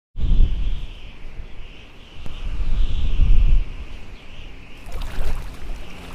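Wind gusting on the microphone, a low buffeting rumble that swells and fades, over a steady high hiss. About five seconds in, the sound turns to a rougher rush of waves breaking.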